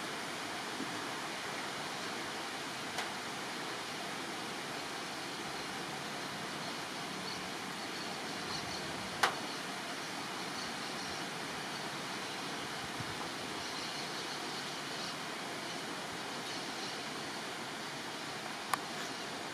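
Steady, even outdoor background hiss, with a faint click about three seconds in and a sharper click about nine seconds in.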